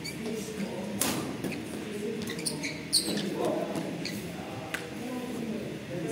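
Badminton rally: sharp racket-on-shuttlecock hits about a second in, near three seconds (the loudest) and near five seconds, with shoes squeaking on the court. Voices murmur in the hall underneath.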